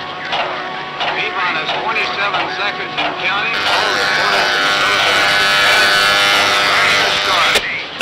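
Film sound effect of the Zero-X craft's jet engines in a high-speed dive. Indistinct voice-like sound in the first few seconds gives way to a steady, loud whining hum with hiss, which cuts off abruptly near the end.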